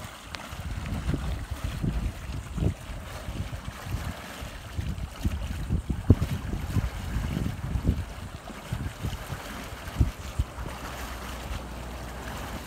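Wind buffeting the microphone in irregular low rumbles and thumps, over a faint wash of water.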